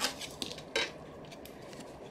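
Small hard objects handled on a tabletop: a few light clicks and clatters in the first second, the sharpest about three-quarters of a second in, then only faint handling taps.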